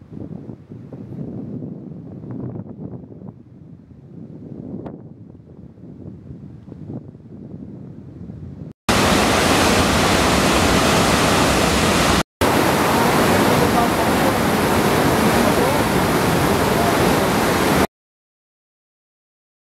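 Water from the Eugi reservoir's bottom outlet blasting into the basin below the dam: a loud, steady rush that starts suddenly about nine seconds in, with a brief break a few seconds later. Before it, a much fainter wind and water noise.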